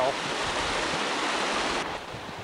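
Steady rushing of a muddy flash flood pouring through a desert wash, an even roar of water that drops sharply to a quieter rush near the end.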